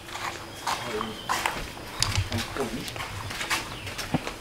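Footsteps of people walking in sandals on a hard stone path: irregular light steps and scuffs, with a few heavier thumps about halfway through.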